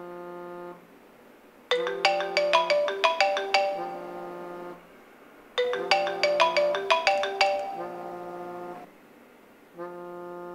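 Repeating electronic melody, ringtone-like: a held low tone, then a quick run of bright plucked notes, looping about every four seconds.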